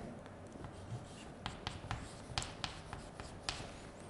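Chalk writing on a chalkboard: a quick run of faint, short taps and scratches, about seven of them, as a short label is chalked on.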